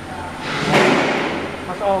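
A rush of noise swells up about half a second in and fades away over the next second. Near the end a voice exclaims "Oh man!"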